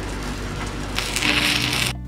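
Background music with steady low notes; about a second in, a welding arc crackles and spits for about a second.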